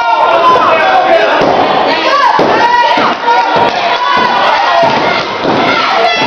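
Crowd of spectators shouting and cheering over one another, loud throughout, with a few dull thuds.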